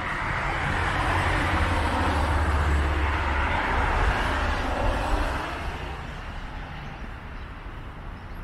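A passing vehicle: its rumbling noise swells, peaks midway, then fades away over the last few seconds.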